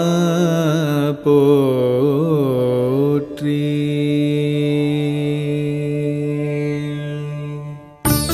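Male voice singing a Tamil devotional song, drawing out the end of a line in two ornamented, wavering phrases, then a long steady note that fades away near the end.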